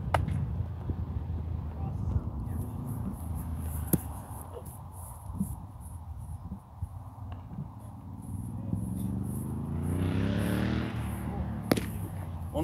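Open ballfield background with a few sharp knocks of a baseball: one right at the start as the pitch reaches the plate, another about four seconds in, and one just before the end. Late on, a passing motor vehicle's engine hum rises steadily in pitch for a couple of seconds, then fades.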